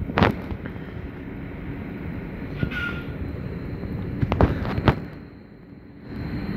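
A train passing through a railway station: a steady low rumble with a few sharp clacks of wheels over rail joints and a short high squeal near the middle.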